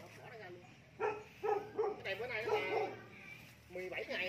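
A dog whining and yipping in short, high, wavering cries, over a steady low hum.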